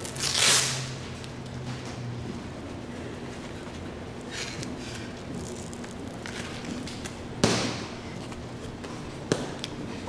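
Two short rasping bursts, about half a second in and about seven and a half seconds in, as the hook-and-loop straps of boxing gloves are pulled and fastened.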